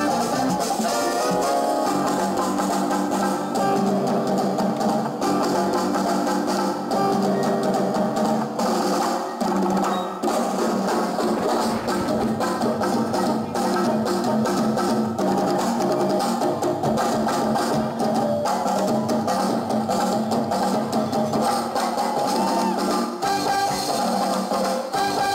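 Live Latin band playing an instrumental salsa passage, with keyboards and percussion keeping a steady, driving rhythm.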